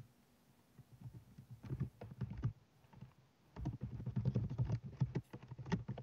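Typing on a computer keyboard: a run of quick key clicks starting about a second in and getting busier and louder from about three and a half seconds.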